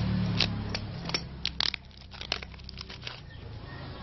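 A hand rubbing and tapping on a tape-wrapped cardboard box, giving a series of sharp crackles and taps of the packing tape and cardboard. A low hum fades out during the first second.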